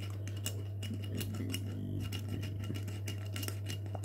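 Steady low hum with scattered light clicks and ticks, and a brief faint murmur about halfway through.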